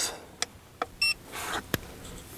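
A portable battery power station being switched on with its power button: a few sharp clicks, and about a second in, one short electronic beep.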